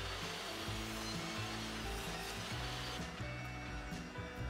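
Quiet background music over the steady whir of a table saw cutting a slot along a wooden rail.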